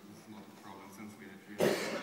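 A single short cough close to the microphone about one and a half seconds in, over faint distant speech.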